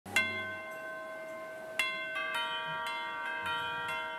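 Yamaha electronic keyboard playing a slow intro in a bell-like sound: a single ringing note, a second about two seconds later, then a few more notes in quicker succession, each left to sustain and fade.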